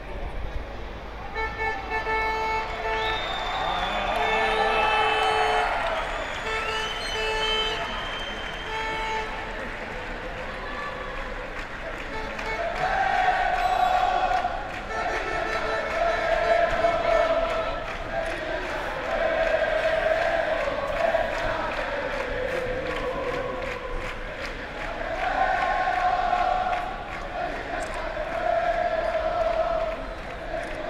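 Football supporters chanting and singing together in long repeated phrases as the team bus arrives. In the first several seconds a steady pitched horn-like tone sounds in several separate blasts over the crowd.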